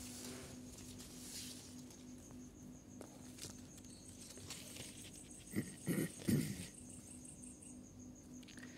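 Quiet night-time ambience: insects trilling in a steady high pulsing chirr over a low steady hum, with a few short soft sounds about five and a half to six and a half seconds in.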